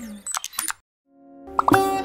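End of a TV station's logo jingle: a few short gliding blips, then a brief gap. About one and a half seconds in, plucked saz (long-necked lute) music begins.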